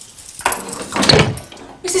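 Heavy steel cell door being unlocked and opened: a small knock, then a louder clunk about a second in as the door swings open.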